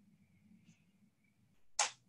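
Faint low hum, then one sharp click near the end.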